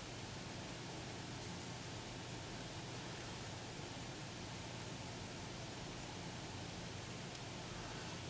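Faint, steady background hiss of room tone, with no distinct events.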